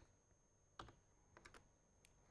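Near silence: room tone with a few faint, short clicks, one just under a second in and two more around a second and a half.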